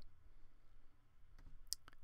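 Two or three faint, sharp computer mouse clicks in the second half, against low room tone.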